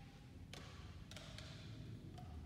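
Quiet background with two faint, sharp clicks, about half a second and a second in.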